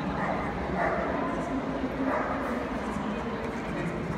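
A dog barking a few times in a busy dog-show hall, over the steady chatter of the crowd.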